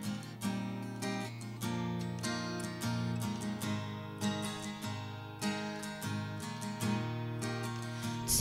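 Acoustic guitar strumming a slow chord progression alone, the instrumental introduction to a worship song.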